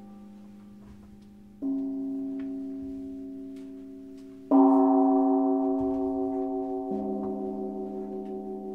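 Slow chords played on a digital piano, each struck chord held and ringing on as it fades slowly. New chords come in about a second and a half in, more loudly at about four and a half seconds, and again near seven seconds.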